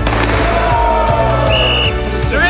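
Background music with a steady beat. A falling tone runs through the middle, and near the end there is one short, high whistle blast.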